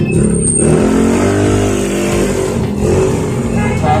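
A motor vehicle engine running and revving, its pitch bending up and down.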